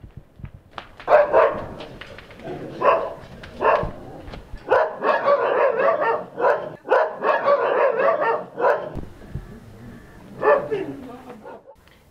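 A woman's loud, wordless vocal outbursts in repeated bursts. They start about a second in, run most densely through the middle, and end with one more burst near the end.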